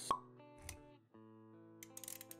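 Animated-intro music with sound effects: a sharp pop that drops quickly in pitch at the start, a soft low thump a little later, and quick clicks near the end, all over held music notes.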